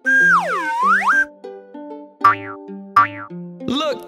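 Bouncy children's cartoon background music. Over it, a sliding cartoon sound effect dips in pitch and rises back in the first second. About two and three seconds in come two short falling swoops, each with a low thud.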